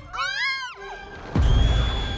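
Animated-film soundtrack: a short, high-pitched cartoon shrew cry that rises and falls, then about one and a half seconds in a loud low rumble sets in as a giant donut rolls down on her, over background music.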